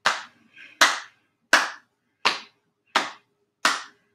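Body percussion in a steady beat: hands patting the thighs and clapping in a pat-pat-clap-clap pattern, six even strokes at about three every two seconds.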